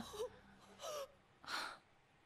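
A woman's two short, audible breaths, about a second in and again half a second later, in dismay.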